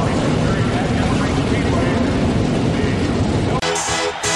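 A dense, steady roar of noise with voices mixed in, cut off sharply about three and a half seconds in by electronic dance music with a heavy beat.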